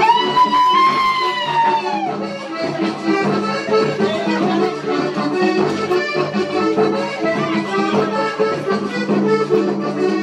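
Panamanian folk dance music led by accordion. One long high note rises and then falls over the first two seconds.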